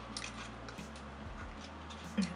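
Faint handling of a small cardboard cosmetics box being opened, with a few soft clicks and rustles over a steady low hum.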